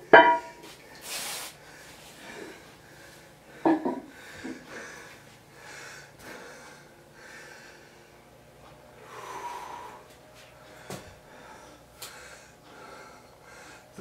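A man breathing hard with effort while shifting a tied bundle of 60 kg of weight plates lying on him. A loud short sound comes right at the start and another about four seconds in.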